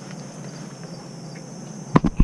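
Steady, faint, high-pitched drone of insects in the grass, with a single sharp knock near the end.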